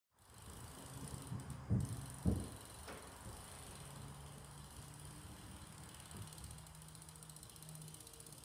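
BMX bike tyres rolling on a plywood ramp floor, with a low steady hum under them. Two loud thumps come about two seconds in, a second apart, and a lighter click follows shortly after.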